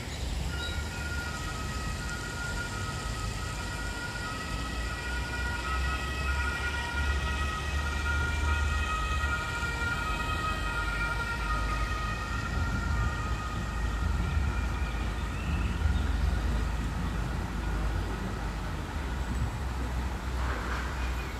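Distant emergency-vehicle siren sounding two alternating tones, steady for most of the time and fading out near the end, over a steady low rumble.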